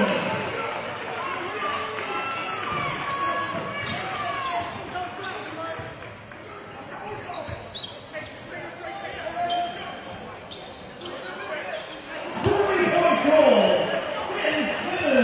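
Basketball game sounds in a gym: a ball bouncing on the hardwood court amid players' and spectators' voices, which get louder near the end.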